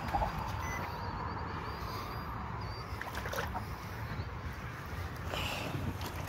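Wind rumbling and buffeting on a phone's microphone, a steady low noise with no clear event standing out.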